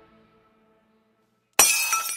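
Outro music fading away, a moment of near silence, then about a second and a half in a sudden loud glass-shattering sound effect with ringing tones.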